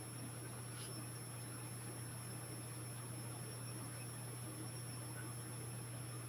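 Quiet room tone: a steady low electrical hum with a faint, thin high-pitched whine above it.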